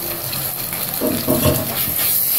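Sliced onions frying in oil in a steel pressure pan, a steady sizzle, with a wooden spatula scraping and stirring through them from about a second in as ginger-garlic paste is mixed in.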